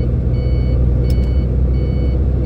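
Heavy truck's engine droning steadily under load, heard from inside the cab, with a high electronic beep repeating about once every 0.7 seconds, the turn-signal beeper sounding while the truck pulls out to overtake.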